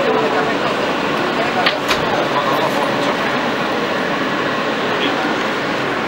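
Steady running noise heard inside an R160A subway car, with passengers chatting in the background. A couple of sharp clicks about two seconds in.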